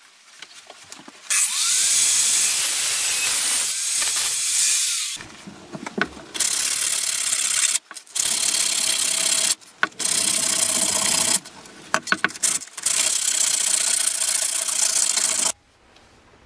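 Small electric power tool running in five bursts of one to four seconds each, with a steady motor hum under a harsh abrasive hiss, as a thin steel rod is sanded with sandpaper.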